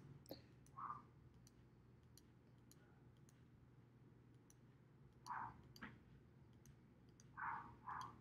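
Faint computer mouse clicks at irregular intervals, each placing a vertex while a line is traced by hand in GIS software, over near-silent room tone.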